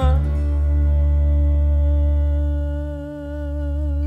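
Music from a 1970s Argentine folk-rock recording: one long held note with a slight waver over a sustained low bass note, the bass dipping briefly about three seconds in.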